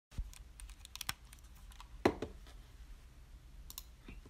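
Scattered light clicks and taps at an uneven pace, with a louder knock about two seconds in, over a low steady hum.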